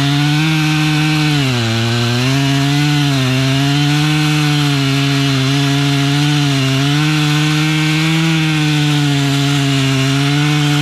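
Gas chainsaw running at high revs while cutting through a felled tree trunk. Its pitch wavers and sags as the chain bites into the wood, with a deeper dip about two seconds in.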